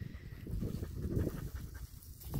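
Siberian husky panting close by.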